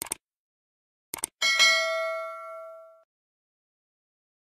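Sound-effect mouse clicks, one short click and then a quick double click, followed by a bright notification-bell ding that rings and fades over about a second and a half.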